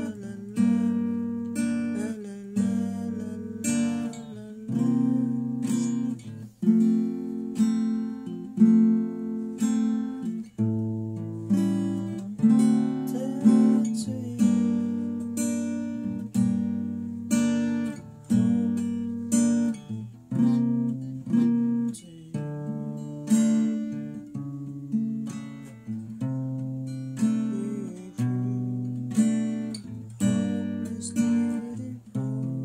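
Acoustic guitar strumming the chorus chord progression (G minor, C7, F, A7, D7 and onward), with one strum about every second that rings out before the next, and the chord changing every second or two.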